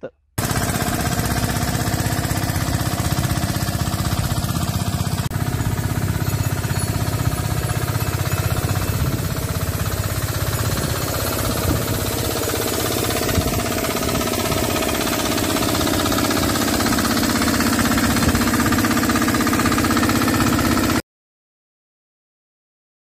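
Small stationary engine of a homemade cart-mounted orchard blower-sprayer running steadily, with a fast, even chugging beat over the rush of the blower's air. It cuts off suddenly near the end.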